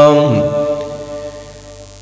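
A man's melodic Arabic chanting of the durood (salawat on the Prophet): the end of a long held note that glides down in pitch in the first half-second, then fades away over the next second and a half before the next phrase.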